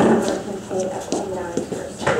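Indistinct voices of people talking, with no words made out.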